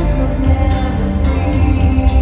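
Live concert music playing through a large arena sound system, with heavy bass and sustained held tones.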